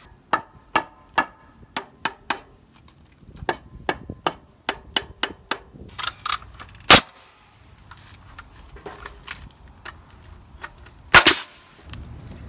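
Pneumatic nailer driving nails through metal joist brackets into wooden floor joists: a run of sharp bangs about two or three a second, with two much louder shots, one about seven seconds in and one near the end.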